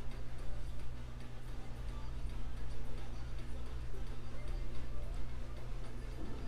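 Faint regular ticking over a low steady hum.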